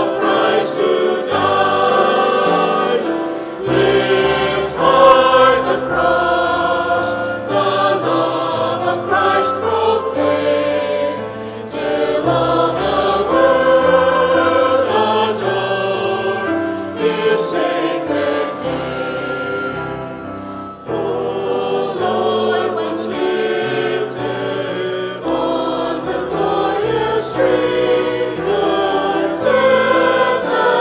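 Choir singing a hymn with instrumental accompaniment, steady low notes changing beneath the sung melody.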